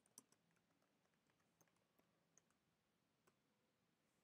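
Near silence with faint computer keyboard key clicks: a quick cluster at the start, then a few scattered single keystrokes.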